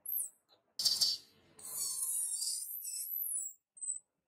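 Newborn pig-tailed macaque infant squealing and screaming in distress. There is a short, very high arching squeal at the start, a harsh scream about a second in, and a long shrill scream through the middle that ends in more high squeals.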